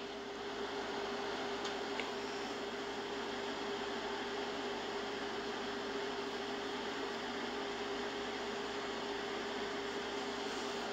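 Steady room-tone hiss with a low, even hum tone under it, unchanging throughout.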